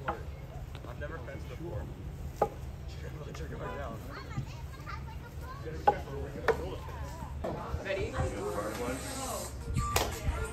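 Wooden sticks whacked against fallen tree logs: a few sharp, separate knocks, two of them close together past the middle, over a steady low background rumble and faint voices.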